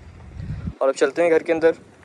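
Low wind rumble on the microphone for under a second that cuts off suddenly, then a man speaking in Urdu.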